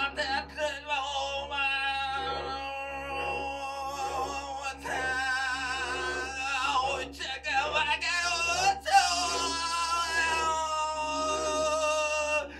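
A man singing into a microphone without words, in long held notes that waver with a wide vibrato, with a loud accent about nine seconds in. A faint steady low hum runs underneath.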